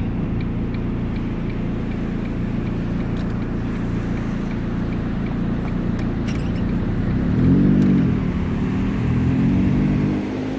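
Steady road noise heard inside a moving car: engine and tyres running on wet pavement. About seven seconds in, a louder pitched sound rises and falls, and another rises near the end.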